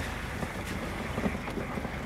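Vehicle driving slowly, a steady low engine and road rumble.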